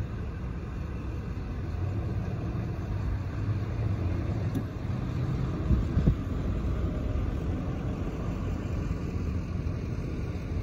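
A car running at low speed, heard from inside the cabin: a steady low rumble of engine and tyres. Two brief low thumps come a little past halfway.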